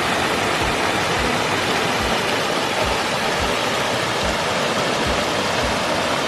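A small waterfall pouring over stone ledges into a shallow pool: a steady, even rush of falling water.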